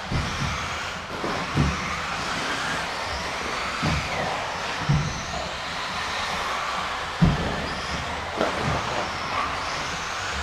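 Several electric 4WD RC buggies racing: a steady mix of motor whine and tyre noise that rises and falls in pitch as they speed up and slow down. Short thumps come every second or two, the loudest about seven seconds in.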